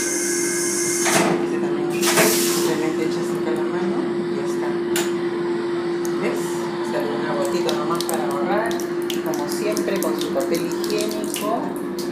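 Washbasin tap running a thin stream of water into the sink basin, with two short rushes of water noise in the first few seconds, over the steady hum of the moving train.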